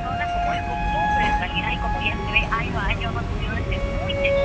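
A voice speaking Spanish in the manner of a news report, over a steady low rumble of bus and street traffic, with held tones under the voice.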